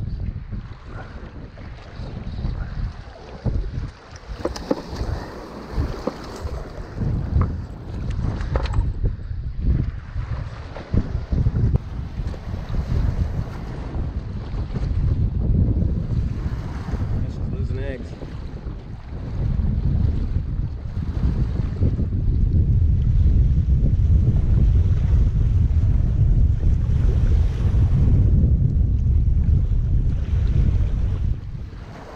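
Wind rumbling on the microphone over small waves washing against a rocky shore; the wind gets louder about two-thirds of the way through.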